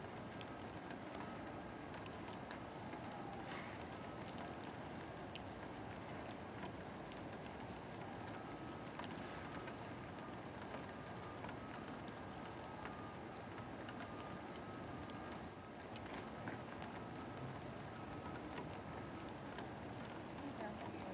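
Steady rain falling, an even patter with scattered small ticks of drops, and a faint steady tone running underneath.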